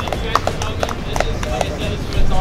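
Scattered handclaps from a crowd, thinning out to a few single claps, with voices talking.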